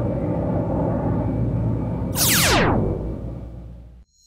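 Synthesized logo-intro sound effect: a steady low rumble with a fast falling whoosh about two seconds in, then fading away near the end.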